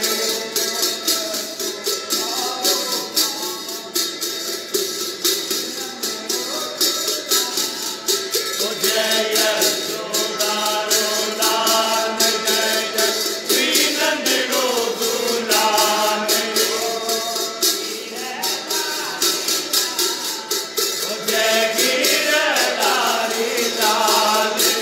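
Hindu devotional singing (a bhajan) over a fast, steady beat of jingling percussion, like small cymbals or a shaker.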